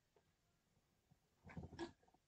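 Near silence, with a couple of faint, short soft sounds near the end.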